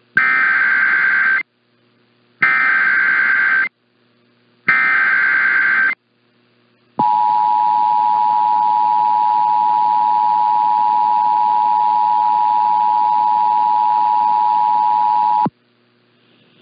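Emergency Alert System activation heard over AM radio. Three short bursts of SAME digital header data tones come about a second apart, then the EAS two-tone attention signal sounds steadily for about eight seconds and cuts off abruptly. The sound is thin and band-limited, as it comes through an AM receiver.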